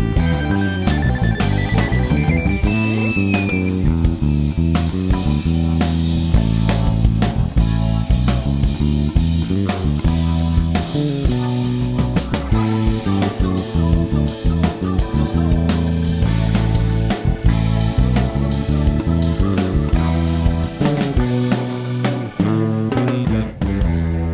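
Six-string electric bass playing a busy bass line along with a full band recording with drums. Near the end the drums and higher instruments stop, leaving low notes ringing on.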